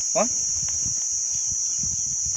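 A steady, high-pitched drone of insects chirring without a break, with one short spoken word at the start.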